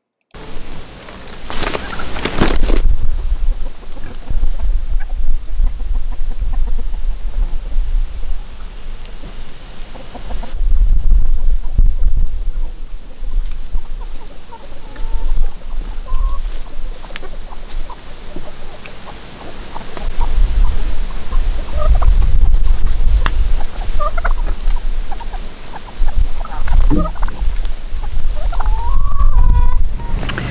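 Chickens and turkeys clucking and calling now and then, with a few short calls in the second half and a longer curving call near the end, over a low rumbling noise that comes and goes.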